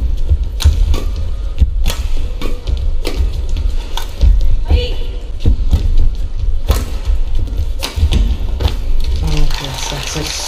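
Badminton rally: rackets striking the shuttlecock in sharp cracks about once a second, over low thuds of the players' feet landing on the court.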